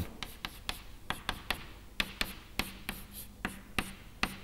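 Chalk on a chalkboard as lines and rings are drawn: a quick, irregular run of sharp taps and short scratchy strokes.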